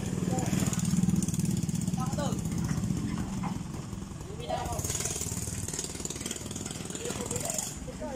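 Single-cylinder motorcycle engine of a tricycle idling in a steady low chug, with people talking over it.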